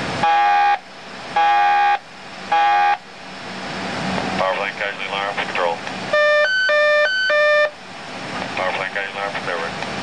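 A submarine's shipboard alarm system sounding a series of alarm signals: three short, loud ringing tones in the first few seconds, then warbling, rising tones, and from about six seconds a loud high-low two-tone alarm.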